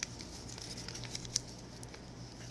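Soft, scattered clicks and light rustles of small decorations and wrapping being handled while a gift arrangement is decorated, with one sharper tick a little past the middle, over a low steady hum.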